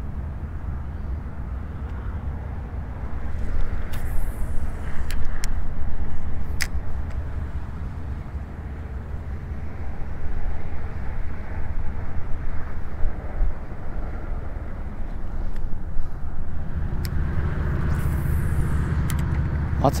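Wind buffeting an action camera's microphone on a kayak: a steady low rumble that swells and eases, with a few light clicks.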